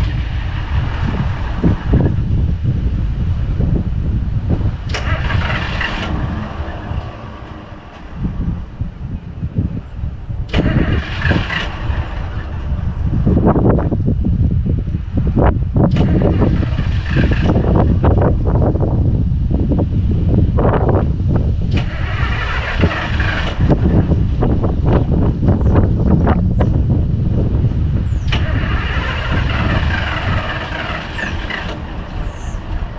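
Ford F-700 rollback truck's engine being started after sitting unused: it cranks and catches, dips briefly, then runs louder and steadier from about halfway through, with repeated revs every few seconds.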